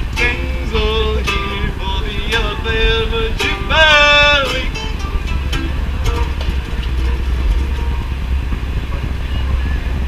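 Banjo music: plucked notes under a held melody that steps from note to note and bends down near the end of the phrase. The music stops about five seconds in, leaving a steady low outdoor rumble.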